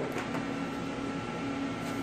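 Steady low machine hum with a faint pulsing in its tone, and a few light clicks of handling.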